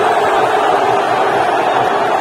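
Large crowd of football supporters chanting together in the stands: a dense, steady mass of voices holding a sung note.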